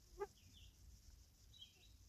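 Near silence with faint, high bird chirps, and one short pitched call just after the start.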